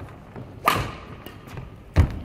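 A shuttlecock struck by a Yonex Duora 10 badminton racket strung with Ashaway Zymax 66 Fire, a sharp crack with a brief ringing ping from the strings, about two-thirds of a second in. At the very end comes a louder heavy thud as a foot lands on the wooden court floor.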